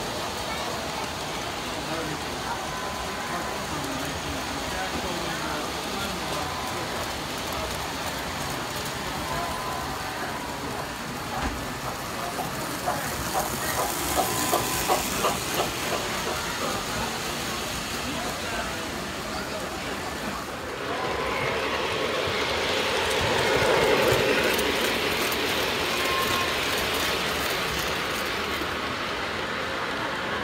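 Three-rail model trains running on the layout, wheels rolling over the track with a run of regular clicks, about two a second, near the middle, over the chatter of a crowd. About two-thirds of the way through the sound grows louder and fuller.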